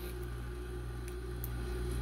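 A steady low hum with a faint steady tone above it, unchanging throughout; no scissor snips are heard.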